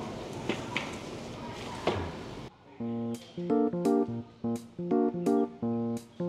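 Restaurant room noise with a few light clicks. About two and a half seconds in it cuts to background music of plucked guitar notes, played in short phrases with small gaps.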